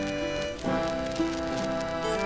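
Concertina playing held chords, changing chord about half a second in, with a crackle of clicks running under it like an old record's surface noise.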